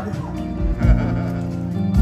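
Live band playing soft sustained notes, with a low thump a little under a second in.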